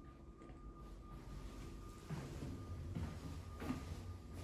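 Quiet indoor room tone: a faint low hum with a thin steady high tone, and a faint murmur that rises slightly in the second half.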